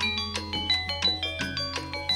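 Gamelan metallophones playing a quick run of struck, ringing notes, about six a second, over a steady low hum from the sound system.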